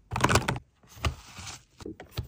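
Plastic makeup products and their packaging handled and set into the padded divider compartments of a makeup case: a cluster of taps and rustles in the first half-second, a short rubbing slide about a second in, and a light tap near the end.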